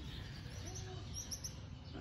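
A few short, high bird chirps in quick succession a little past the middle, over a low, steady background hum.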